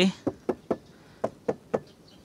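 Knuckles knocking on a Daihatsu Ayla's plastic door trim panel, about six short knocks at roughly three a second. The knocks test the door, lined behind the trim with 5 mm glasswool sound deadener, which sounds fairly muffled ("lumayan redup").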